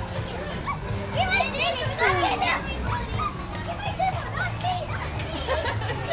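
Young children's excited, high-pitched voices and squeals, loudest about a second or two in, over a steady low hum.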